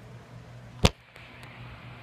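A single sharp knock a little under a second in, over a faint steady low hum.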